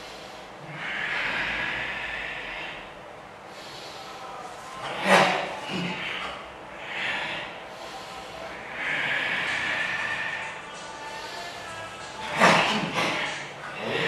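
Kung fu practitioners breathing out hard through the mouth and nose as they perform a form together, long hissing exhalations of a second or two each. Two short, sharp, louder sounds come about seven seconds apart.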